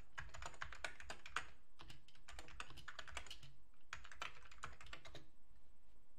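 Typing on the beige keyboard of an Amiga computer: quick runs of key clicks with short pauses between them.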